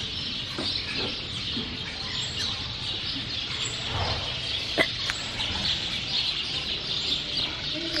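Birds calling steadily in the background, a dense high chirping chorus, with a few faint knocks.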